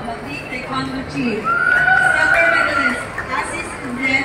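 A person's long, high-pitched yell, held for about a second and a half from about a second and a half in, over the chatter of a crowd.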